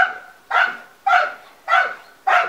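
A dog barking repeatedly: four short, evenly spaced barks, about two a second.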